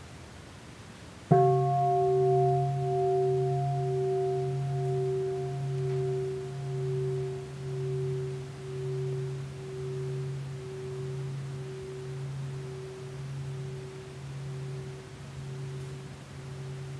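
A large bronze bowl bell struck once about a second in, then ringing on with a low hum and several higher overtones. The ring swells and fades in a slow wavering pulse as it dies away, the highest overtones going first.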